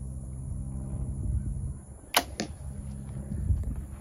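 A compound bow shot: the string is released with a sharp crack about halfway in, and a fainter smack follows about a quarter second later as the arrow strikes a block target 21 yards away.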